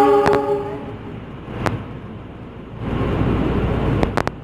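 A train horn's chord sounds and cuts off about a second in, followed by the rumble of an express passenger train passing close by on the rails, with a couple of sharp clacks. The rumble grows louder near the end.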